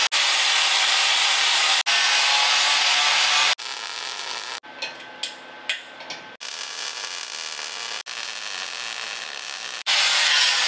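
Angle grinder grinding on a steel truck frame rail, in loud steady stretches cut short by edits. About three and a half seconds in it gives way to a quieter stretch with a few clicks and knocks, then a quieter steady run of noise near the end.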